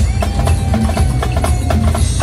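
Marching snare drums played as a drumline, a quick even pattern of sharp stick strokes over a steady low rumble, with a held tone underneath.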